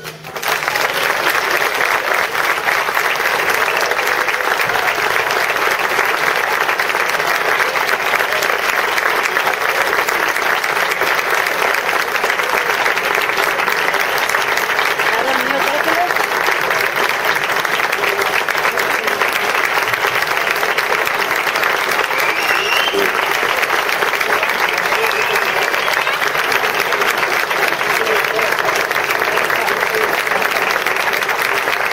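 Audience applauding steadily after the band's final chord, with a couple of short rising cheers about halfway through.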